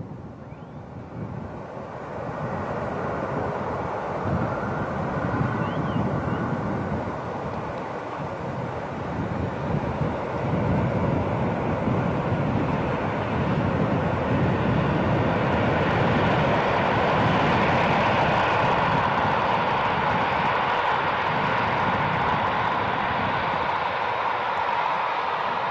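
Rhaetian Railway metre-gauge electric train, a locomotive hauling coaches, approaching. Its running noise of wheels on rails grows steadily louder as it nears and is loudest in the second half.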